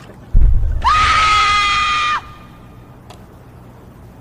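A deep thump, then a single long, high-pitched scream from a woman, held steady for about a second and a half before it cuts off abruptly.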